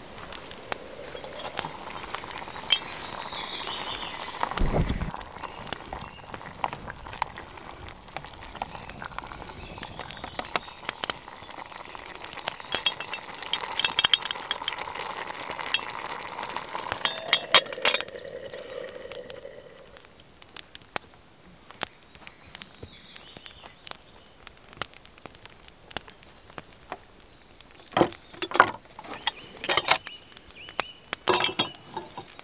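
Stew simmering and sizzling in a lidded iron pot over a crackling wood fire, with a dull thump about five seconds in. The iron lid clinks against the pot as it is handled, in two bursts around the middle. The sizzle drops away about two-thirds through, and a few more clinks come near the end.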